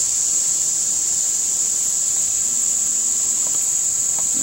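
Insects singing in a steady, unbroken high-pitched chorus, with a faint low hum in the second half.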